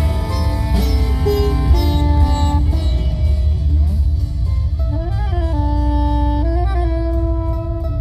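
Live band of sitar, guitar, bass guitar, drums and soprano saxophone playing a slow passage. A melody line holds long notes with two slow pitch bends near the middle, over a steady deep bass, while the cymbal shimmer thins out after the first few seconds.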